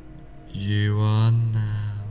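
A man's low voice draws out a single word in a slow, even, chant-like hypnotic delivery, starting about half a second in and held for well over a second, over soft calming background music.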